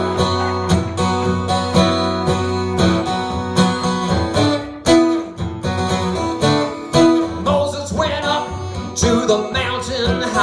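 A solo acoustic guitar strummed in a steady, driving rhythm: the opening of a rock song played live.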